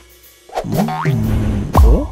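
Cartoon-style transition sound effect over music: springy, boing-like sliding tones start about half a second in, and a deep thump with a falling sweep comes near the end.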